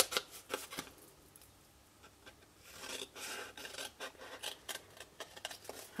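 Scissors cutting through patterned paper: a few sharp snips near the start, a short lull, then a longer run of cutting and paper rubbing through the second half.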